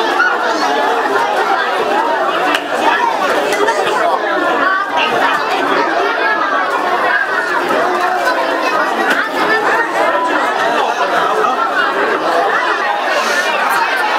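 A crowd of children chattering, many voices overlapping at once without letup.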